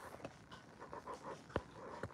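Quick, faint panting breaths, about four a second, with a single sharp click about one and a half seconds in.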